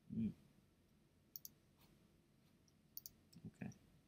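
Two sharp clicks of a computer mouse button, about a second and a half apart, as menu items are clicked in a web browser.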